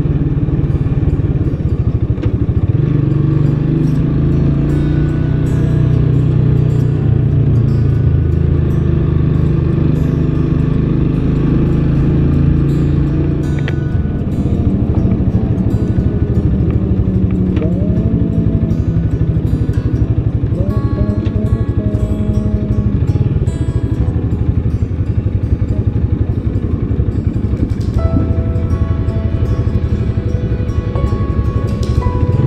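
Motorcycle engine running steadily under way, with music playing over it.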